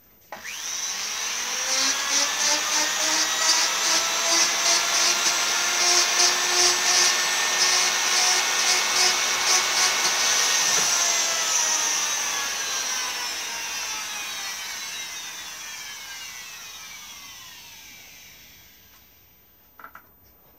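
Small handheld rotary power tool spinning up to speed and working an ash walking-stick shank, its note pulsing about twice a second as it bites. About halfway through it is switched off and coasts down, its whine falling slowly in pitch and fading away.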